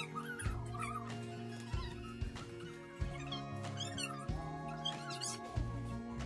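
Background music: sustained chords over a bass, with a sharp hit every second or so and a high, wavering melody line.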